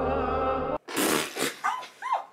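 Background music cuts off under a second in. Brief bursts of noise follow, then a couple of short yelping cries near the end, each falling in pitch.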